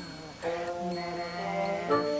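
Stage band holding a sustained chord of several steady notes, coming in about half a second in after a brief dip.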